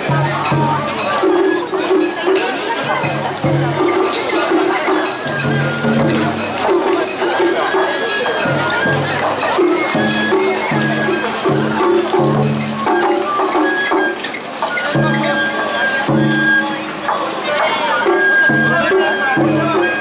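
Japanese festival hayashi music from a float: a bamboo flute holding high notes over drums. A crowd talks throughout.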